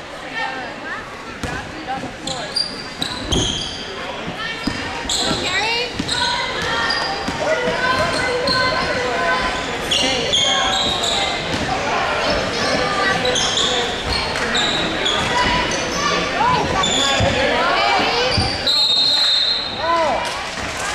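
Basketball game on a gym's hardwood court: the ball bouncing, sneakers squeaking, and players and spectators calling out, all echoing in the hall. It grows louder a few seconds in as play gets going.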